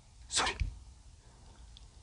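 A person's single short, sharp burst of breath, sneeze-like, about a third of a second in.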